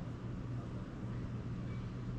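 Room tone: a steady low hum with a faint even hiss, and no distinct event.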